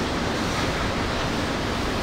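Steady, even hiss of background noise with nothing standing out.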